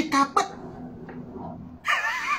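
A man's talk breaks off, and after a short pause a high-pitched laugh bursts out near the end.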